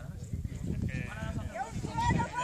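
Indistinct voices of a group of people calling out at a distance, growing clearer about a second in, over a steady low rumbling noise.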